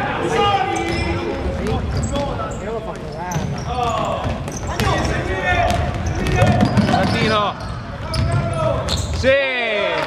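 Basketball game play on a hardwood gym court: the ball bouncing and short high squeaks among shouted calls, echoing in the hall.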